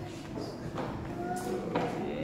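Faint children's voices with a few light taps and knocks as hands handle a picture board book on a tabletop.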